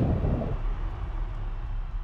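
A low rumble that fades away steadily.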